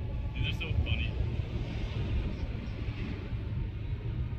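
Beach ambience: a steady low rumble on the phone's microphone, with a few short high chirps about half a second to a second in.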